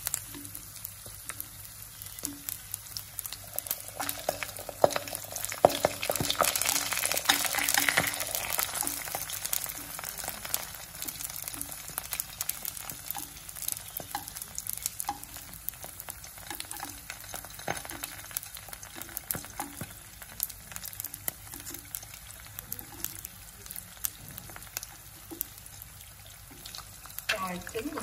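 An egg and sliced sausages frying in hot oil in a nonstick pan: a steady sizzle with crackling pops, loudest between about four and nine seconds in, then softer.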